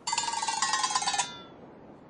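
Cartoon sound effect: a rapid, fluttering run of bright metallic bell-like strikes lasting just over a second, then cutting off sharply.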